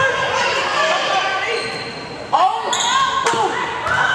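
Volleyball impacts ringing through a gymnasium over a crowd of overlapping voices: a sharp smack about two and a third seconds in, then two more, a second and a half-second later.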